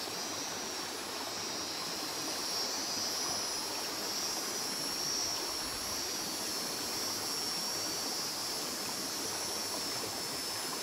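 Steady outdoor ambience: a continuous high-pitched insect drone that wavers slightly, over an even rushing noise.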